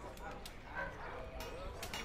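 Faint background ambience of a town: distant voices, a dog yipping and barking, and scattered sharp clicks.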